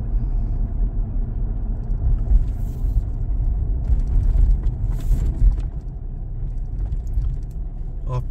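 Inside a Toyota Fortuner SUV on the move on a wet road: a steady low rumble of engine and tyres, with two brief hissing swells, about three and five seconds in.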